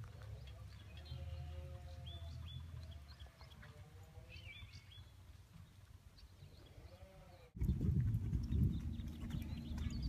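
Faint, wavering animal calls and short high chirps over a low rumble, then about seven and a half seconds in the sound cuts abruptly to louder, irregular thudding of a horse's hooves on the ground.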